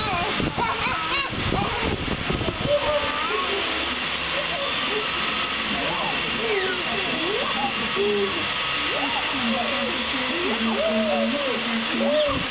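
Young children's and a baby's voices: high squeals, calls and babble without clear words, over a steady background hiss.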